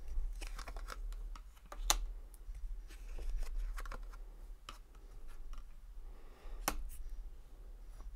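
A thick tarot deck being shuffled by hand and a card laid on the table: irregular dry clicks and slaps of card stock, the sharpest a little under two seconds in and another near the end, over a steady low hum.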